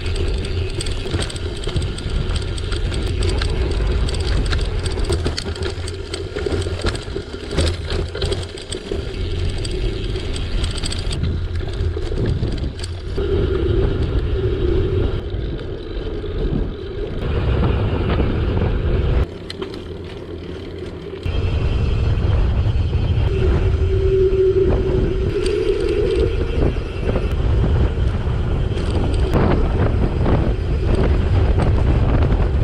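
Wind rushing over a handlebar-mounted camera's microphone on a bicycle descent, with tyre noise and frequent knocks and rattles from the bike over the first ten seconds or so on a dirt track, then a smoother, steadier rush on asphalt.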